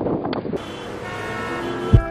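A few footsteps crunching in snow, then a sustained musical chord fading in and swelling, with a heavy low drum hit right at the end as a song starts.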